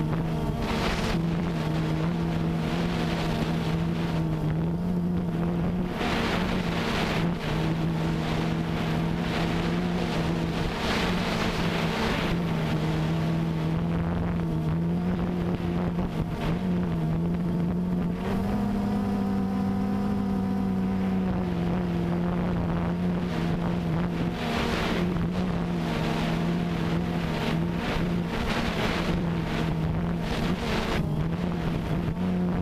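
DJI Phantom 2 quadcopter's motors and propellers buzzing steadily in flight, heard from the camera mounted on it, with wind buffeting the microphone. The buzz rises slightly in pitch for a few seconds about two-thirds of the way through.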